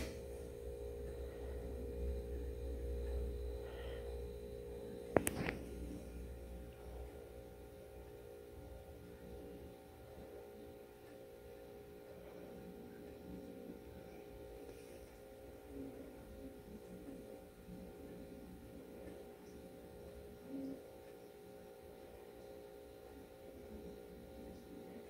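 A quiet, steady electrical hum, with a low rumble in the first few seconds and a single sharp click about five seconds in.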